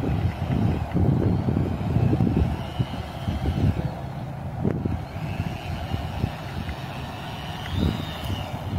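Small electric motor of an RC model boat whining faintly as it runs in at low throttle, the whine growing a little higher and stronger near the end as the boat comes close, under a louder, uneven low rumble of wind on the microphone.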